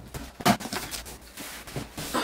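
A large cardboard box sealed with clear packing tape being opened: the tape pulled off the cardboard and the flaps pried up, a run of crackles and scrapes with one sharper snap about half a second in.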